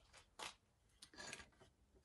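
Near silence: room tone with a couple of faint, brief rustles.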